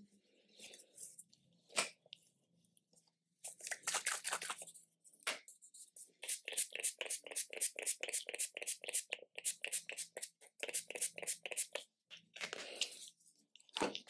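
A setting-spray bottle pumped quickly to mist the face. First comes a short burst of sprays, then a long run of short hisses about five a second, and one more burst near the end.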